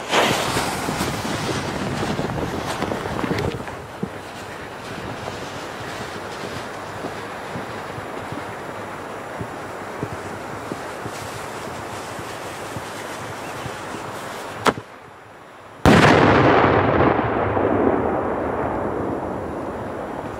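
The fuse of a Polish 3-inch cylinder shell fizzes as it is lit, then hisses steadily while it burns. About 16 seconds in, the shell goes off on the ground in a single loud bang, followed by a long echo that fades over several seconds.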